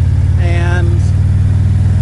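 Harley-Davidson touring motorcycle's V-twin engine running steadily at a constant cruising speed.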